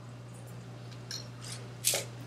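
A steady low electrical hum, with a few short, sharp clicks and a brief hissy burst near the end, the loudest sound.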